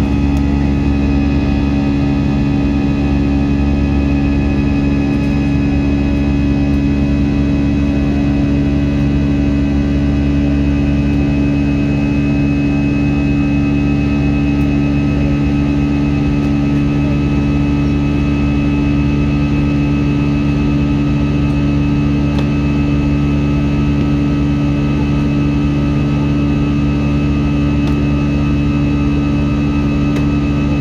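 Steady cabin drone of an Airbus A320-family airliner's turbofan engines at climb power just after takeoff, heard from a window seat beside the engine: several steady low hums under a constant rush and a faint high whine.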